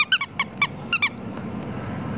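Rubber duck toy squeezed by hand, giving about five short, high squeaks in quick succession during the first second.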